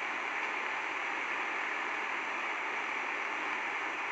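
Steady background hiss, even and unchanging, with no other sound.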